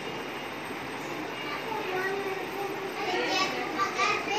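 Young children chattering and talking over one another, an indistinct murmur of small voices that grows livelier near the end.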